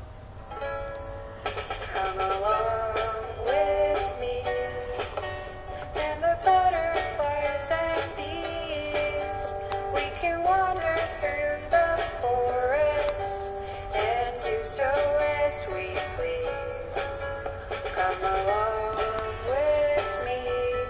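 Music: a light melody carried over evenly spaced beats, with no sung words.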